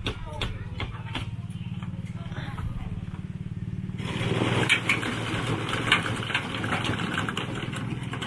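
A small engine running steadily, with a low, even hum. About halfway through it is joined by louder rough noise with scattered clicks and knocks.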